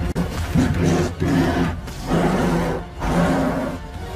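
A giant creature roars three times, each roar long and rough, over a dramatic film score.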